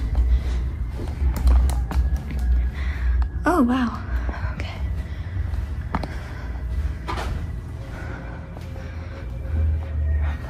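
Low rumble of a handheld camera being carried and muffled footsteps on carpet while walking, with a few scattered clicks. A brief voice sound comes about three and a half seconds in.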